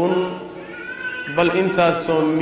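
A man speaking, with a short pause under a second long about half a second in before his voice comes back.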